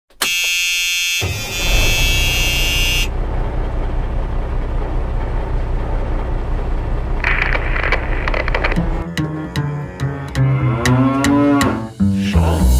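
A loud horn-like blast, then a big farm tractor's engine running with a steady low rumble. About nine seconds in the engine gives way to music with regular drum hits.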